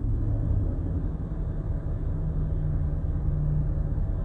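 Car idling, a low steady rumble with a faint hum, heard from inside the cabin.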